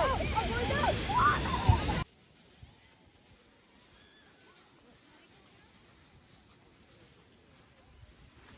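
Wind buffeting the microphone, with voices calling out over it, cuts off abruptly about two seconds in. What follows is a much quieter background with faint, distant voices.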